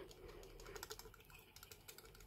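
Faint rapid clicking of a small plastic vial knocking against the neck of a plastic culture flask as it is jiggled to empty the culture out.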